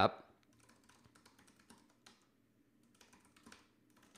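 Faint, scattered keystrokes on a computer keyboard as a username is typed at a terminal prompt.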